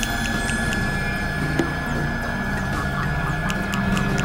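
Dense experimental electronic noise music, several tracks layered at once: low drones under a steady high tone, with scattered sharp clicks and short falling high chirps, most of them in the second half.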